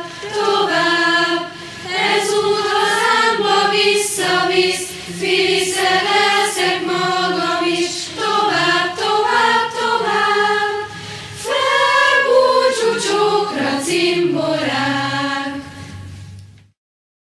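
A choir singing a song in phrases, with short breaks between them.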